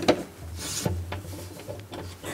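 Handling noise from a cello and its surroundings: a few wooden knocks, one right at the start and others about a second in, with a brief rubbing sound between them.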